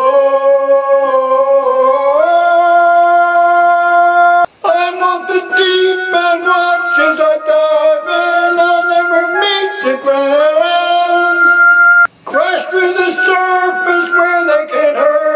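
A man singing without words: long held notes, some of them wavering, with pitch steps between them. The singing is cut by two sudden, brief silences.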